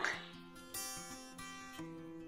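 Quiet background music: plucked acoustic guitar notes, a new one starting about three-quarters of a second in and another near the end, each ringing out and fading.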